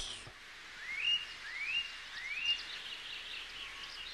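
Birds chirping over a faint outdoor background: three rising chirps about two-thirds of a second apart, then quicker, higher chirps near the end.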